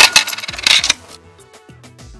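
Coins clattering in a coin-operated slot machine: a quick, loud run of metallic clinks through the first second. Quieter background music with a steady beat follows.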